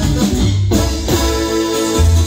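Live band playing: electric guitar, electric bass and drum kit.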